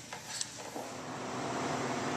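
Wind-up kitchen timer ringing with its dial run down to zero, a steady ring that starts about a second in: the five-minute wait is up.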